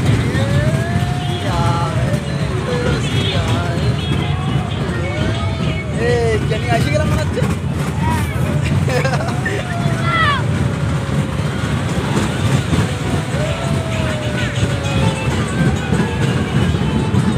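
Carnival ride running with a steady low rumble, while riders let out several long whooping shouts that rise and fall in pitch.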